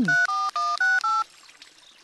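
Mobile phone keypad dialing tones: five short two-tone beeps in quick succession as a number is dialed.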